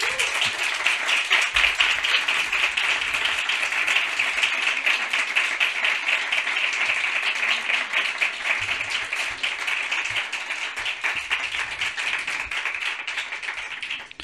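A live audience applauding: a dense, steady patter of many hands clapping that eases off a little near the end.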